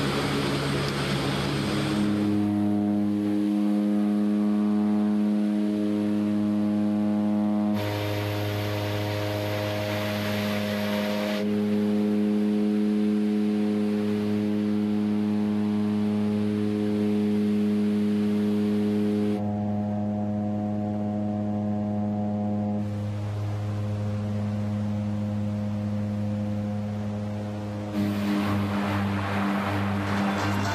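Propeller aircraft engines droning steadily, heard from inside the cabin. The pitch and noise of the drone shift abruptly about six times.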